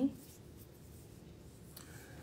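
Quiet room tone with a faint scratchy rustle, just after a brief spoken 'mm-hmm' at the very start.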